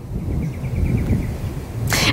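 Outdoor street ambience dominated by wind rumbling on the microphone, with a faint high trill of about nine quick chirps a second during the first second.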